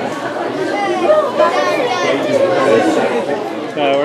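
People talking: indistinct chatter of voices, with no other distinct sound standing out.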